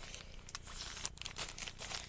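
Thin clear plastic packaging bag crinkling in a run of quick crackles as it is handled and pulled open by hand.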